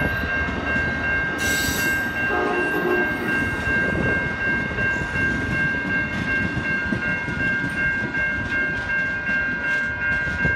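Amtrak passenger coaches rolling past at a grade crossing: a steady rumble and clatter of wheels on rail. Over it runs a continuous high ringing tone from the crossing warning signal, with a brief sharp hiss about a second and a half in.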